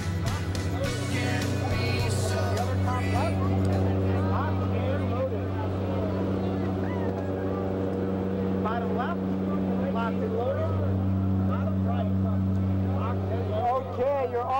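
Steady low drone of a jump plane's engines heard inside the cabin during the climb, with voices talking faintly under it.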